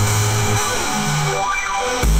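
AI-generated electronic instrumental music: a deep synth bass under a dense, hissy synth layer. The bass drops out about half a second in, and shorter, higher bass notes follow.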